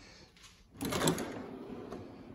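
Drawer of a metal rolling tool chest pulled open on its slides about a second in: a short clatter, then a sliding sound that fades.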